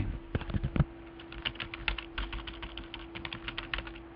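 Typing on a computer keyboard: a quick, uneven run of keystrokes, over a faint steady hum.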